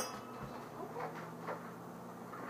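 Quiet room with a ceiling fan running: a faint, steady low hum, with a few faint soft ticks.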